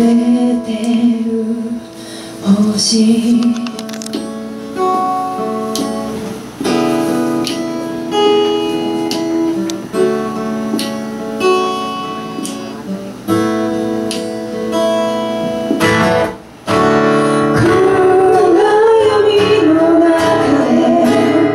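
Acoustic guitar picked and strummed under a woman singing. The voice is clearest at the start and comes back strongly near the end, after a brief drop in level.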